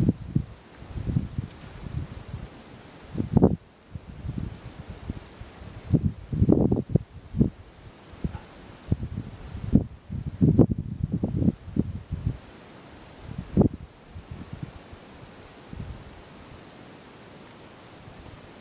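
Wind buffeting the microphone in irregular low gusts, dying down to a steady faint hiss for the last few seconds.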